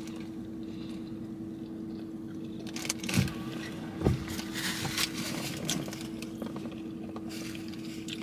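A paper food wrapper rustling and crinkling in a few short, faint rustles as it is handled and folded, over a steady low hum inside a car.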